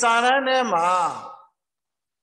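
A person's voice, one long drawn-out stretch of speech or chant-like utterance, ending about one and a half seconds in and followed by dead silence, as of a video-call link.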